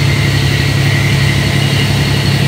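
Pleasure boat's engine running steadily under way: a constant low drone with a thin, steady high whine over it.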